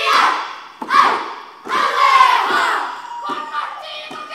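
Children's kapa haka group shouting a haka chant in unison, in three loud shouted phrases, then going on more quietly.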